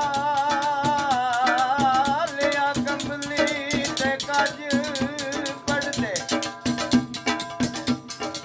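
Punjabi folk music: fast, even hand-drumming on large steel pots with a jingling rattle, under a wavering, vibrato-laden melody line. The melody slides down about six seconds in and the percussion carries on.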